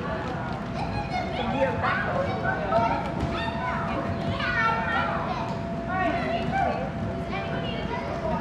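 A crowd of children playing, with many high voices shouting and calling over one another, none of it clear speech.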